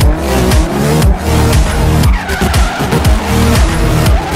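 Electronic music with a steady beat, mixed with a drift car's tyres squealing as it slides, and its engine running.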